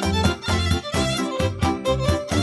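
Romanian folk dance tune from Maramureș played on the fiddle (ceterǎ), the melody running over a steady, pulsing rhythmic accompaniment. It is an instrumental passage with no singing.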